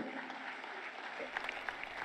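Audience applauding, fairly quietly.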